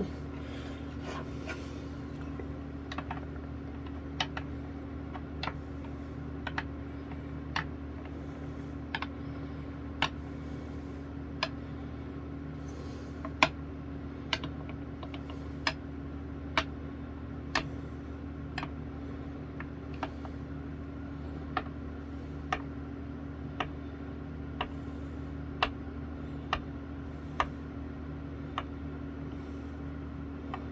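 Light clicks, roughly one a second and unevenly spaced, as a small metal fret rocker is set down and rocked across the frets of a bass to check that they are level. None of the frets proves high.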